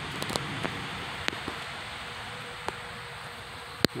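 Steady hum of a honeybee colony in an open hive box, with scattered small clicks and taps and one sharper click just before the end.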